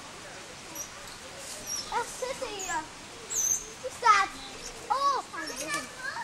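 Children's voices calling and chattering in short rising and falling bursts, with a few brief high-pitched chirps in between.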